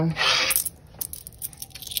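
Quarters handled on a tabletop and fed into a plastic digital coin-counting jar. A short metallic scrape-and-rattle of coins comes in the first half second, followed by a few faint clicks.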